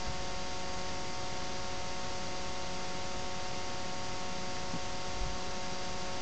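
Steady electrical hiss with a constant hum of several fixed tones: the recording's own noise floor, with nothing else sounding.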